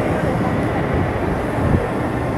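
A steady low rumble of outdoor background noise, with no single event standing out.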